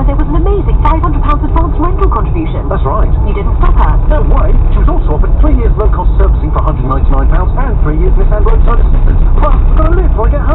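A voice from the car radio, over the steady low rumble of the engine and tyres inside the vehicle's cab.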